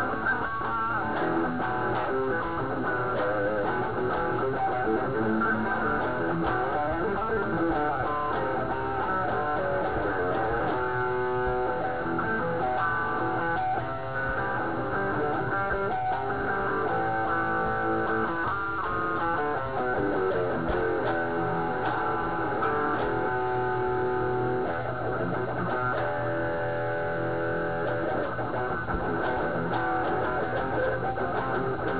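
Solo electric guitar mixing quickly picked single-note lines and strummed chords, with notes left to ring in places. A low steady hum sits underneath.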